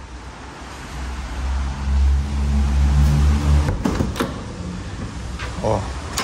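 Doors of a Land Rover Defender being opened and people climbing into the cab: a low rumbling shuffle of bodies and cab panels, then two sharp latch-like clicks a little past halfway.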